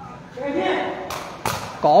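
Two sharp knocks about a second in, under half a second apart: a sepak takraw ball being kicked during a rally.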